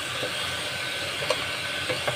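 Sliced jackfruit and anchovies sizzling in a stainless steel pot while a wooden spatula stirs them, with a few light knocks of the spatula against the pot.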